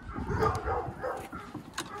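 German shorthaired pointer panting hard with a short whine, the dog warm before a run. A click or two comes from the tracking collar being buckled on its neck.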